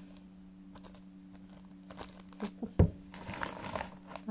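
A plastic liquid-soap bottle with a pump dispenser being handled: a few light clicks and knocks, then a thump as it is set down on the table near the three-second mark, followed by a short rustle of plastic.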